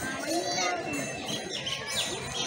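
Children's voices calling and chattering over a crowd.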